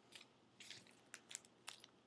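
Near silence with several faint, short clicks and rustles of paper cards being handled and shuffled.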